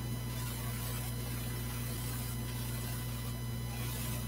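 Steady electrical hum with a low, even hiss: room tone with no distinct event.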